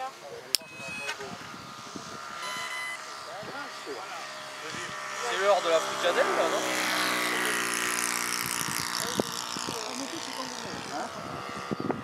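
A model airplane's engine droning as it flies past, growing louder about five seconds in and easing off near the end, with people talking nearby.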